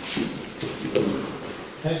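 Bodies hitting a padded mat in a wrestling takedown: a thud at the start and another about a second in, with scuffling on the mat.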